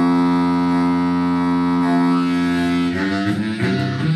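Blues harmonica cupped against a microphone, amplified, holding one long note for about three seconds and then breaking into shorter, shifting notes near the end.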